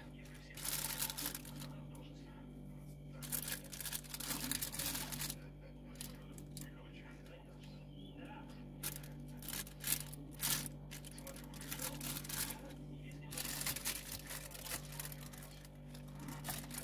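Plastic roasting bag crinkling in bursts as baked turkey pieces are turned over in it with a fork and a silicone spatula, with small clicks and scrapes of the utensils.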